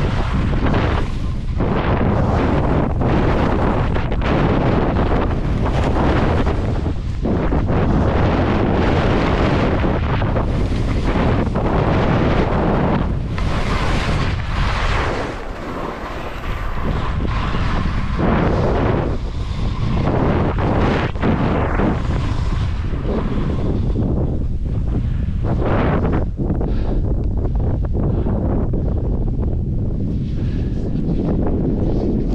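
Wind rushing over a skier's body-mounted camera microphone at speed, mixed with skis scraping and hissing on wind-packed snow, swelling and easing every second or two through the turns. There is a brief lull about halfway.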